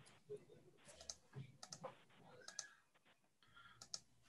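Faint clicking at a computer, a scatter of short clicks over a few seconds against near silence, as screen sharing is set up.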